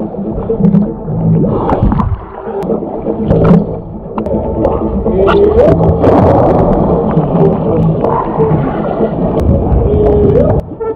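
Pool water sloshing and splashing around a camera held at the waterline, muffled by the water, with a swimmer splashing close by about six seconds in.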